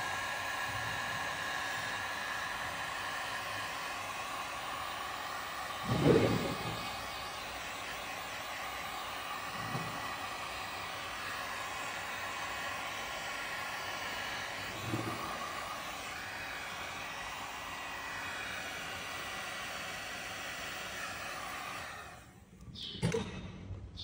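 Handheld electric heat gun blowing steadily while it shrinks heat-shrink tubing over a soldered wire joint; it cuts off at the end. A short thump about six seconds in, and two fainter ones later.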